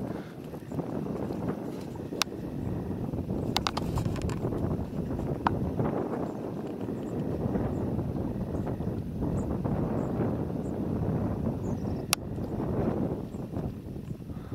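Wind buffeting the microphone outdoors, a gusty low rumble that rises and falls, with a few sharp clicks from the camera being handled.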